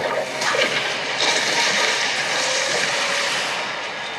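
Film trailer sound effect of rushing water, a steady hiss that eases off slightly toward the end.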